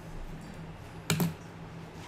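A single sharp click of a computer key being struck, about a second in, over a low steady hum.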